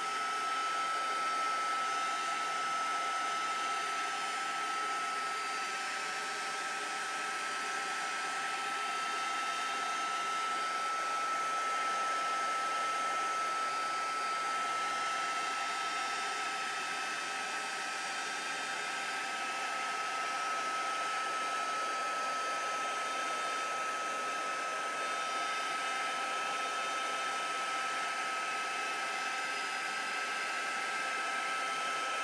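A handheld hot-air blower running steadily, drying wet paper: a constant rush of air with a steady high whine from its motor.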